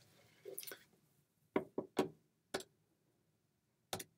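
A Texas Instruments BA II Plus calculator being fetched and set down on the desk: a soft rustle, then about five short, light clicks and taps as it is handled.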